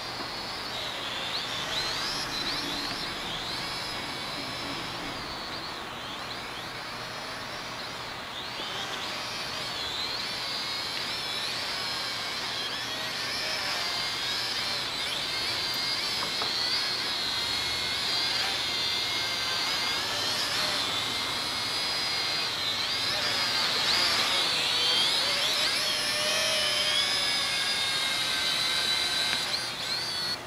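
Holy Stone HS110 quadcopter's motors and propellers whining in flight, the pitch wavering up and down with the throttle. The whine grows louder in the second half and cuts off suddenly at the very end.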